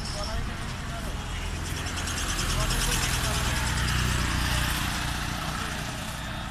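A motor vehicle passing close by: engine hum and road noise swell to a peak three to four seconds in, then fade.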